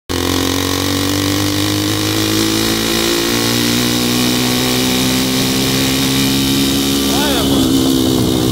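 Honda CB300's single-cylinder engine running steadily at cruising speed, heard over wind rush on the microphone.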